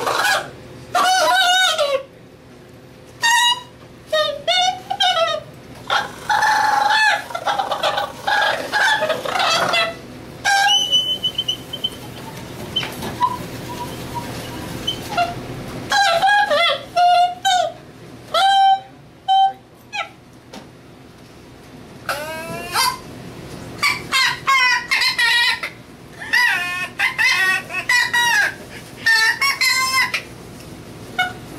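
Squawking, honking calls blown or voiced through cupped hands at the mouth, each short with a bending pitch, coming in several clusters with quieter gaps between them.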